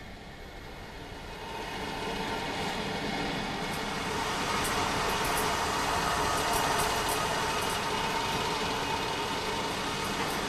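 A steady rushing, mechanical-sounding noise that swells over the first two seconds and then holds, with faint held tones and scattered light ticks in the middle.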